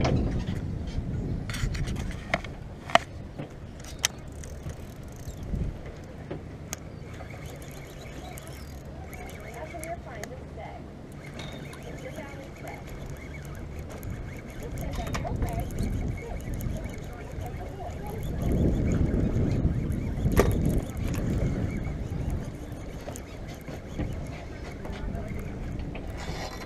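A motorboat's engine running on the lake with a low, steady rumble, which swells louder for a few seconds past the middle. Wind is on the microphone, and a few sharp clicks come in the first few seconds.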